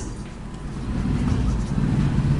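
A low, steady rumble that grows a little louder about halfway through, of the kind a vehicle engine or traffic makes.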